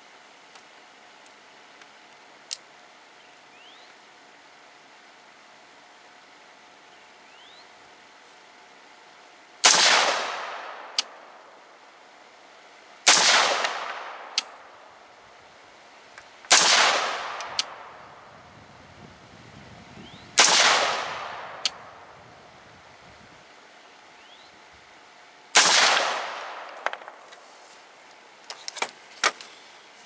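AR-15-style rifle firing five single aimed shots a few seconds apart, each report trailing off in a long echo. A light click follows most shots, and a few small handling clicks come near the end.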